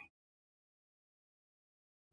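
Complete silence with no room tone: the sound track drops out entirely.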